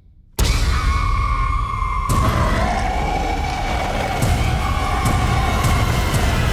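Horror trailer score and sound design slamming in about half a second in: a loud, dense wall of shrill, dissonant held tones that waver in pitch over a deep rumble, punctuated by sharp hits.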